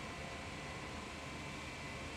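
Steady hiss of background noise with faint, steady high-pitched tones running through it; no distinct events.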